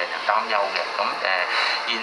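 Speech only: a man speaking steadily.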